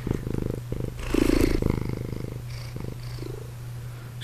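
Domestic cat purring close to the microphone: a fast, pulsing low rumble with short breaks, louder for a moment about a second in.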